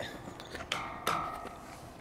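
Low background sound with faint voices and a short, thin high tone just under a second in.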